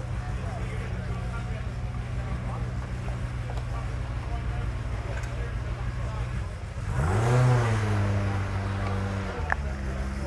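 Car engine running with a steady low drone, then revved once about seven seconds in and settling back to a steady idle.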